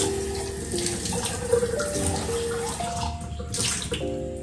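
Kitchen tap running water into the sink while a dish is washed under the stream, the splashing heaviest near the end. Soft background music notes play underneath.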